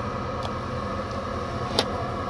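A vehicle engine running steadily, heard from inside a vehicle cabin, with a single sharp click near the end.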